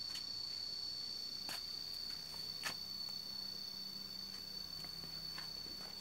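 Insects trilling steadily on one unbroken high note, with a couple of faint clicks.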